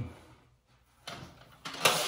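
Scraping, rustling friction noise of a wallpaper sheet being worked by hand against the wall at a seam. It starts about a second in and is loudest near the end.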